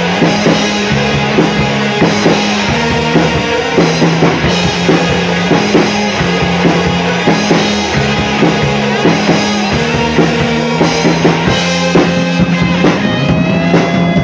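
Rock band playing an instrumental passage: electric guitars, electric bass and a drum kit keeping a steady beat, with no vocals.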